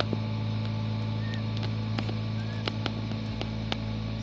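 A steady low mechanical hum, with a few faint sharp clicks scattered through it.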